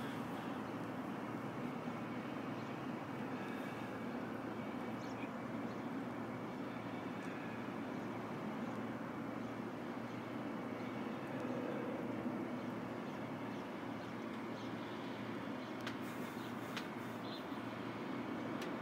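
Steady distant traffic hum outdoors, an even background noise that holds level with no distinct events.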